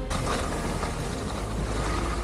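Skis hissing and scraping over snow on a fast downhill run, with wind rumbling on the helmet-mounted camera microphone.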